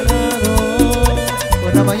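Cumbia band music in an instrumental passage between sung lines: a bass line and melodic lead lines over an even percussion beat of about four strokes a second.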